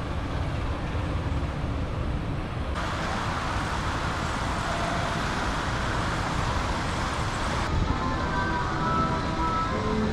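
Steady outdoor background rumble and hiss that changes character suddenly twice, about three seconds in and near the end, with a few faint high tones in the last couple of seconds.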